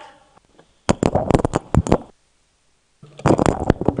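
Rustling and knocks right at a desk microphone, as if it is being handled or papers are moved against it, in two loud bursts about a second long with a stretch of dead silence between them where the sound feed cuts out.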